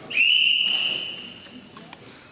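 Referee's whistle in a wrestling bout, one long blast of about a second and a half with a quick rise in pitch at the start, stopping the action on the mat.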